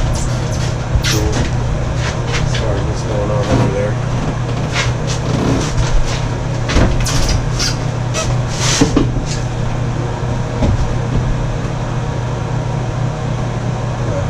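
Scattered knocks and scrapes of a bathtub being lifted and handled over a mortar bed, over a steady low hum.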